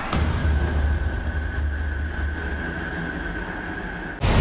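Title-sequence sound design: a sharp hit right at the start, then a low rumbling drone with a thin high tone held over it, slowly fading.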